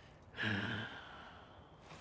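A wounded man gives a short, pained groaning exhale about half a second in.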